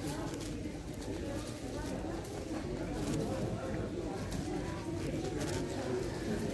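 A 7x7 speed cube being turned quickly by hand, its plastic layers clicking and clattering in quick runs, over a steady background murmur of indistinct voices.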